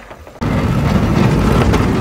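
A small Kia hatchback on concrete-coated wheels driving on pavement, a loud low rumble of engine and wheels that starts suddenly about half a second in.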